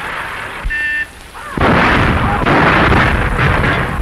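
12-inch railway howitzer firing: a sudden loud blast about one and a half seconds in, followed by a long spread-out rumble that carries on for over two seconds.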